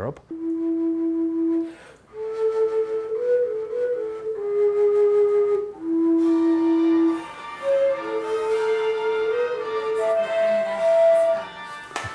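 Fujara, the tall Slovak shepherd's overtone flute, playing a slow tune of long held notes in several phrases, with short breaks between them; the final note is the highest.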